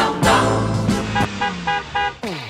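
A car horn honking over background music: one long blast of about a second, then several short beeps.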